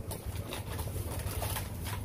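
Metal shopping cart being pushed along: a steady low rumble from its wheels with a light rattle of the wire basket, heard from inside the cart.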